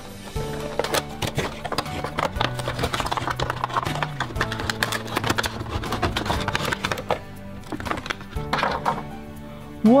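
A cardboard Funko Pop! box being opened and handled by hand: dense crinkling, scraping and clicking for most of the first seven seconds, then a few scattered clicks, over steady background music.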